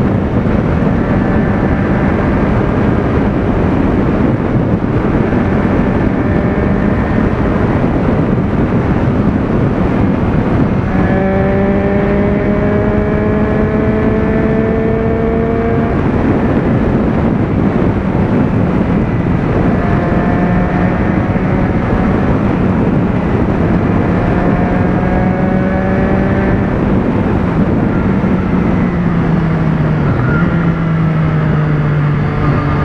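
Motorcycle engine held at highway speed, around 140 km/h, under a heavy rush of wind. Its steady note rises gently in pitch twice as the throttle is eased open, then drops near the end.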